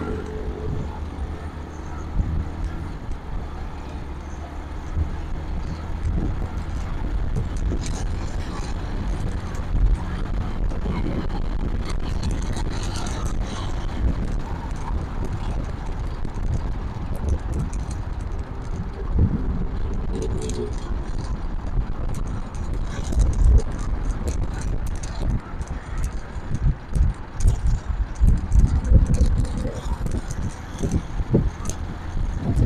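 Motorcycle riding at steady road speed: engine and road noise with heavy wind buffeting on the handlebar-mounted microphone, gustier near the end.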